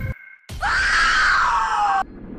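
A woman screams: one long, loud cry that starts about half a second in and falls steadily in pitch.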